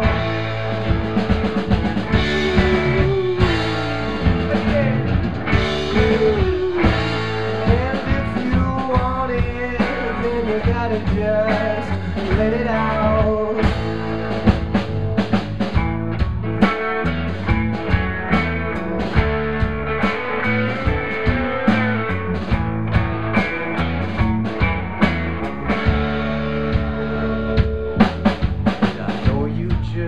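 Live rock band playing an instrumental break: electric guitars over a steadily played drum kit, with a lead melody of bent, gliding notes through the first half.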